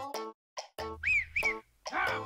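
A short music sting: clipped pitched notes in quick bursts with brief silences between them, and two quick whistle-like tones that rise and fall about a second in.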